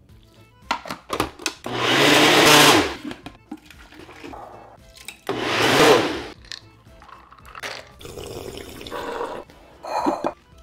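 Personal countertop blender running twice in short bursts of about a second each, blending watermelon flesh into juice; the motor's hum drops in pitch as the first burst stops. Light clicks and knocks of the cup being handled come between the bursts.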